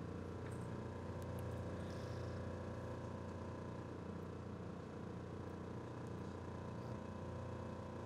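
Room tone: a steady, even hum with a few faint ticks.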